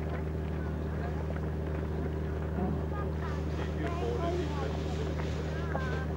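A steady, low mechanical hum that never changes pitch, with faint voices of people talking in the background.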